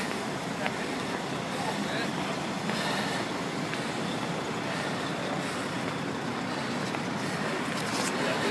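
Steady outdoor traffic noise as a continuous hiss, picked up by a phone's microphone, with faint indistinct voices.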